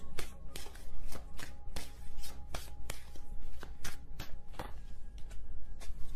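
A deck of tarot cards being shuffled by hand: an irregular run of quick card flicks and slaps, several per second.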